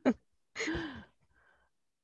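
A woman's voice saying a brief "okay", then a short sigh that falls in pitch.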